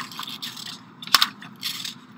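Rustling and scraping handling noises, with one sharp click a little past a second in.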